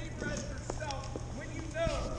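Indistinct voices on a city sidewalk, with a few sharp knocks at irregular intervals over a steady low background hum.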